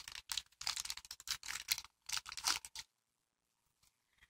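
Plastic bags and tissue paper crinkling and rustling as they are handled, a quick run of small crackles that stops about three seconds in.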